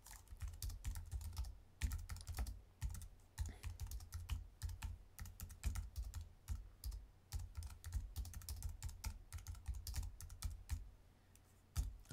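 Typing on a computer keyboard: a quick, irregular run of key clicks that stops briefly about a second before the end.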